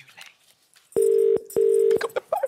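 British telephone ringback tone: a double beep about a second in, the two-part ring heard while a call waits to be answered.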